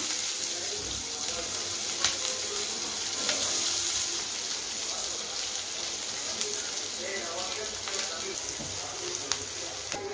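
Chopped onions and green chillies sizzling in hot oil in a frying pan, a steady hiss, with a couple of light clicks.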